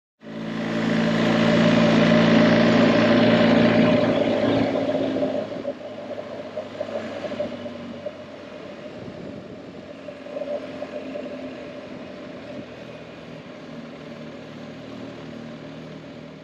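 BMW R 1250 GS boxer-twin engine running on the move, with wind and road noise. It is loud for the first five seconds or so, then drops much quieter and runs on steadily.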